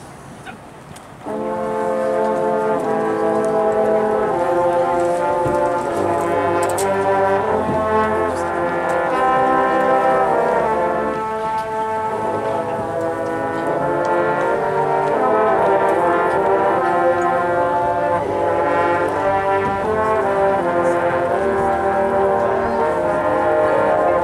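A marching band's brass section comes in about a second in, playing loud held chords that move from one to the next.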